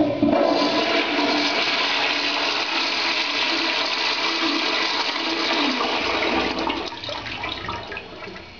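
Old Mueller toilet on a flushometer valve flushing: the rush of water starts suddenly and stays strong for about six seconds, then tapers off near the end. A strong flush.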